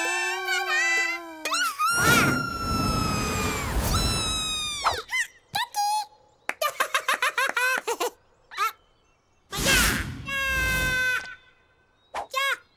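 Cartoon soundtrack of character voices and sound effects: a loud rushing whoosh with falling whistle-like tones, then a run of short squeaky wordless chirps from the cartoon chicks, and a second rushing burst near the end.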